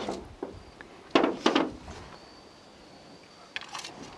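A few short clicks and knocks from a pistol and its magazine being handled, with two louder clacks a little over a second in.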